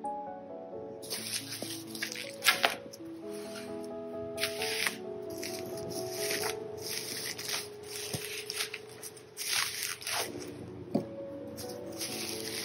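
Solo piano music playing a slow melody, with repeated crinkling and rustling of bubble wrap and plastic-wrapped albums being handled.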